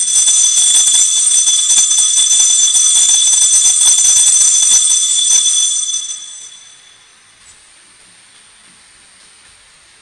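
Cluster of altar bells (sanctus bells) shaken continuously, a bright, high, many-toned jingling for about six seconds that then dies away. They ring for the elevation of the chalice just after the consecration.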